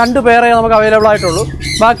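A person speaking Malayalam, drawing out one long vowel on a steady pitch for over a second before breaking off and going on. Caged birds squawk and chirp behind the voice.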